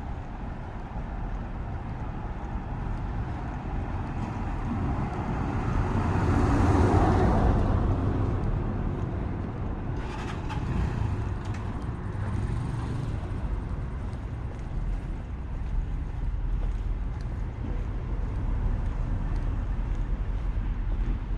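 Street traffic: a vehicle drives past, growing louder to its peak about seven seconds in and then fading away, over a steady low rumble. A smaller passing sound follows a few seconds later.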